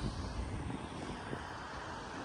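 Steady outdoor background noise: an even low rumble with no distinct events.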